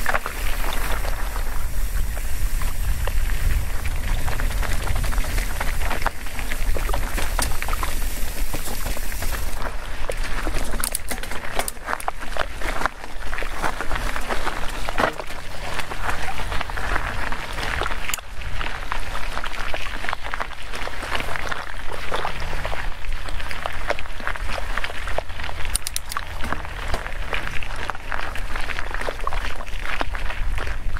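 Cross-country mountain bike ridden over loose, rocky desert trail: tyres crunching on gravel and the bike rattling over stones, with a steady wind rumble on the camera microphone. For about the first ten seconds, while the bike coasts downhill, a high buzz runs under it, typical of a freewheel hub ratcheting; it stops when the rider starts pedalling.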